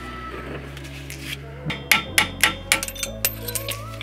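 A small hammer strikes a long socket extension used as a drift, knocking a pin out of the Subaru WRX shifter linkage. It is a rapid run of about nine sharp metal-on-metal taps, starting about a second and a half in.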